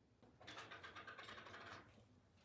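Faint crinkling and rustling of a thin plastic food-prep glove being pulled onto a hand, starting about half a second in and stopping just before the end.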